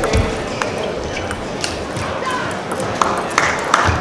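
Table tennis ball clicks on bat and table: a few scattered single knocks, then a rally starting near the end with quicker knocks back and forth.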